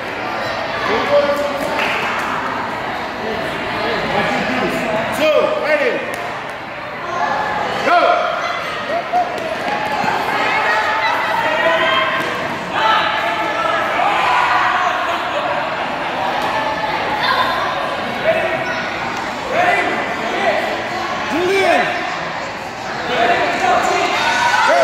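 Crowd of children and adults talking and calling out at once, echoing in a large gymnasium, with occasional sharp thuds.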